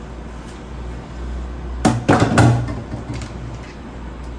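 A saucepan set down in a stainless steel sink: a quick cluster of knocks and clatters about two seconds in, over a low steady hum.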